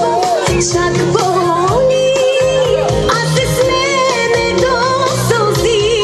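Live band music with singing: an ornamented, wavering melody over a steady beat.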